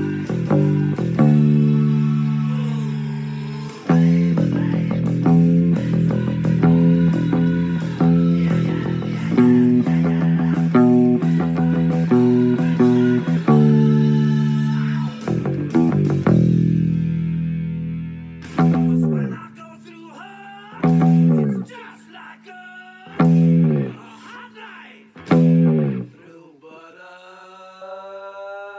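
Electric bass played along with a hard rock band recording: full band music with bass, guitar and drums. In the last third the band switches to four short, separate hits about two seconds apart with quiet gaps between, and a held chord starts near the end.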